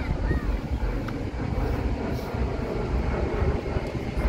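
Wind buffeting the microphone as a loud, uneven low rumble over open-air ambience, with a couple of short bird chirps at the very start.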